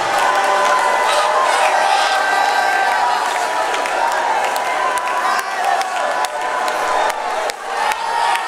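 A church congregation shouting praise to God together, many voices overlapping in a loud, steady din.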